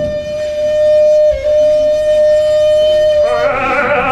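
Wooden flute holding one long, steady note that dips briefly in pitch a little over a second in. Near the end the playing turns into a wavering, vibrato line.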